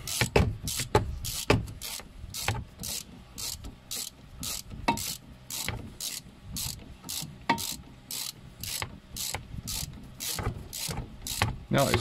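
Hand ratchet clicking in a steady run of about three clicks a second as a brake caliper bolt is wound out. The bolt turns freely because no thread locker was put on it.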